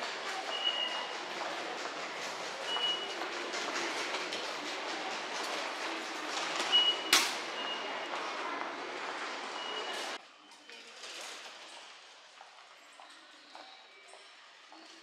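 Busy railway-station concourse noise with several short high beeps from the ticket gates and one sharp click about seven seconds in. About ten seconds in the noise drops abruptly to a much quieter hall background.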